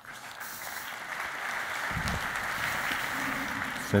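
Audience applause, a steady dense clatter of many hands that swells slightly, with a brief low thump about two seconds in.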